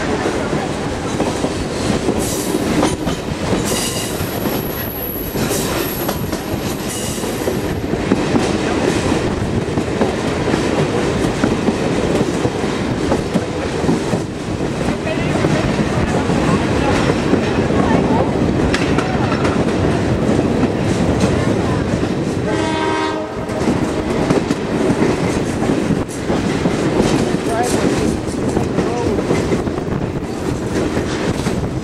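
Passenger train in motion, heard from aboard a car: steady rumble and clatter of wheels on the rails. About three-quarters of the way through, the locomotive's horn sounds in one short blast of about a second.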